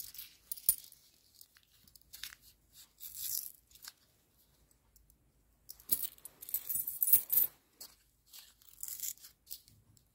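Cupronickel 100-won coins clinking together in the hand, mixed with the crinkle and tearing of a paper coin-roll wrapper, in a string of short sharp clicks and rustles. The busiest stretch comes about six to seven and a half seconds in.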